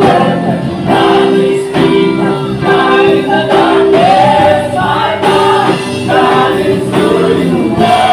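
A worship team of male and female voices sings a contemporary gospel worship chorus together, backed by a live band.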